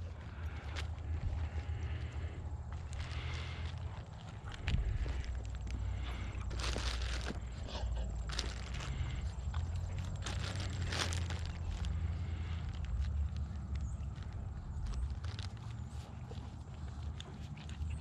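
Scattered rustling and crinkling of dog treats being unwrapped and handed out, over a steady low rumble.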